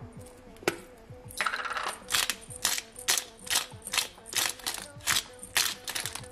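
Hand pepper mill grinding black pepper: a rhythmic run of short, gritty grinding strokes, about three a second, starting about one and a half seconds in.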